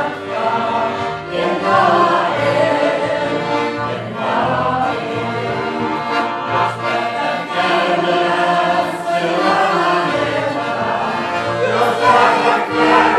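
A group of voices singing a Christian song together, in long held phrases.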